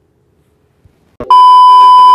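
Loud, steady 1 kHz beep tone, the test tone that goes with a TV colour-bar screen. It starts abruptly a little over a second in, after near silence.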